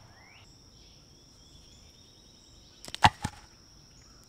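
A short clatter of sharp wooden knocks about three seconds in, one much louder than the rest, as an improvised deadfall trap's board drops onto its sticks. Steady high insect buzz underneath.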